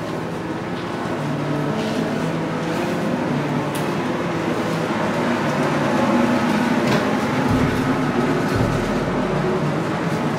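Loud, steady background rumble with a low hum that wavers in pitch; the hotel is called very noisy.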